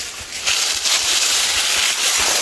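A steady, crackly rustling and scraping of dry leaves and loose soil being disturbed, starting about half a second in.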